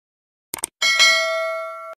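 Subscribe-animation sound effects: two quick clicks, then a bell ding for the notification bell that rings on with several clear tones, fading, and cuts off suddenly near the end.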